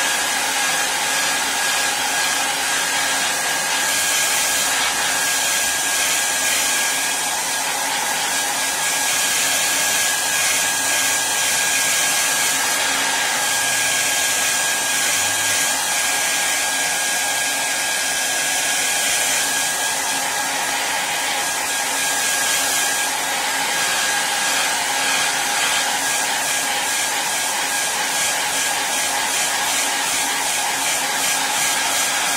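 Handheld hair dryer blowing steadily on a wet ink wash on paper: an even rushing of air with a thin steady whine, the hiss swelling and easing slightly as the dryer is moved over the sheet.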